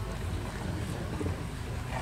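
Wind buffeting the microphone outdoors: a steady low rumble with a faint hiss over it.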